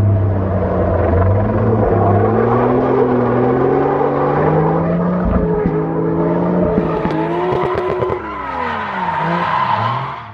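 Turbocharged Toyota Chaser engine revving hard through a drift, with tyre noise. The engine note climbs over the first few seconds, holds, then drops away near the end.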